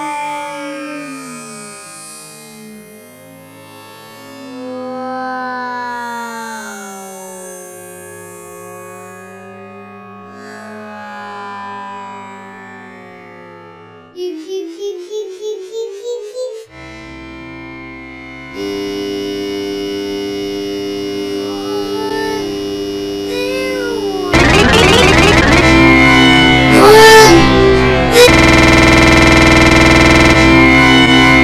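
Electronically warped audio effects: gliding, pitch-bent tones, then a stretch of about three quick pulses a second midway. It ends in a loud, harsh, distorted blast in the last few seconds.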